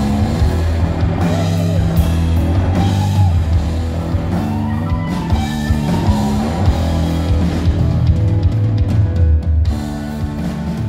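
Live rock band playing an instrumental passage on electric guitar, bass guitar, keyboards and drum kit, loud and continuous, with sliding guitar lines above a heavy bass.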